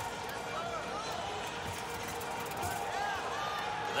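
Gymnastics arena ambience: faint voices calling out in the hall over a steady murmur, with a couple of faint dull thumps.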